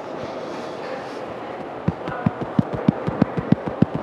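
Subway-station escalator ambience, a steady rumbling din. About halfway through, a regular beat of sharp thumps starts, about three a second.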